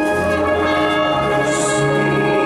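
Wind orchestra playing held chords, with brass prominent and the bass line moving to new notes at the start and again about a second in.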